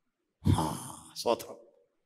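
A man's breathy vocal sounds into a close microphone: a sudden sigh-like exhale about half a second in, then a short voiced syllable that trails off.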